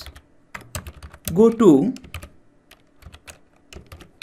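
Typing on a computer keyboard: a run of separate key clicks, broken by a short spoken phrase near the middle.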